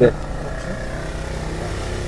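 A steady engine running, a low even drone that neither rises nor falls.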